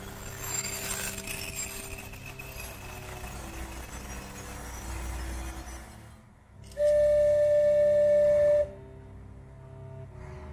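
Locomotive whistle of the Kominato Railway trolley train: one long, steady blast of about two seconds, starting and stopping sharply about seven seconds in. Soft background music plays throughout.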